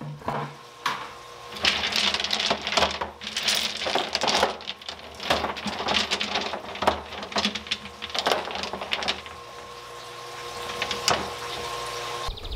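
River rocks being set down by hand into a plastic barrel, clattering and knocking against one another in a busy run of short clicks that thins out near the end.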